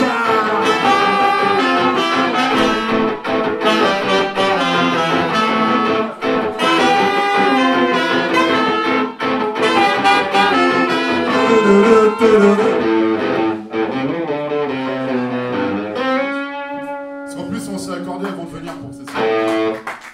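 Unplugged punk band playing live, with guitar to the fore, winding down to one long held note near the end.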